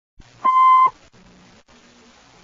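A single short electronic beep, one steady tone about half a second long, followed by faint hiss and low hum.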